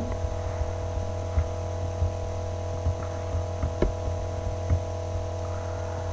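Steady electrical hum with several constant tones underneath, and a few faint ticks scattered through it.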